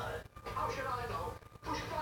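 Indistinct speech, broken by two brief dropouts, from a television playing in the background.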